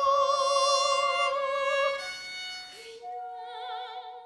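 Soprano voice singing a long held note with vibrato over a baroque violin accompaniment, in a French baroque aria. About two seconds in the note ends and the music goes on more softly.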